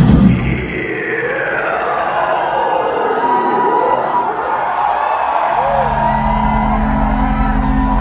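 Live heavy band music stops abruptly just after the start, leaving crowd cheering under a long sliding amplified tone that falls and then rises. About five and a half seconds in, a steady low sustained drone from the band's amplified instruments comes in.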